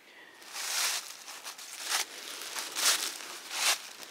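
Dry rustling and crunching close to the microphone, coming in about five separate surges.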